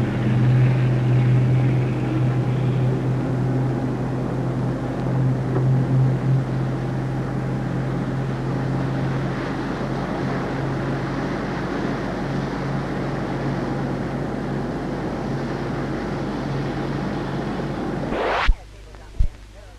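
Motor launch's engine running at speed: a steady low drone with the rush of water from its bow wave and wake.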